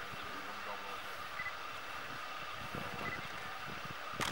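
Steady low background hum of a vehicle engine running at the roadside, with faint murmured voices and two faint short high beeps.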